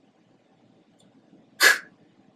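Quiet room tone, then near the end a man says one short 'k' sound, the spoken phonogram for 'ck'.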